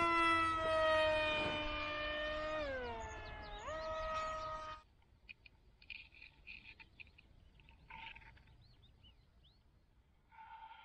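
A paramotor engine revving: its whine drops in pitch, climbs back up and cuts off abruptly just under five seconds in. Faint short chirping calls follow.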